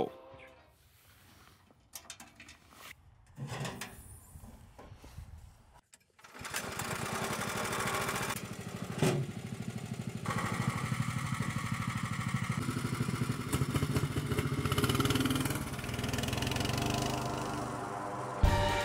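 The VEBR Huge tracked ATV's 7 hp engine starts about six seconds in, after a few quiet seconds with scattered knocks, and then runs steadily as the machine drives off.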